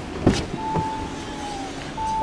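The driver's door of an Audi A5 Sportback being opened: a sharp latch clunk, a lighter click, and a steady whine lasting about a second.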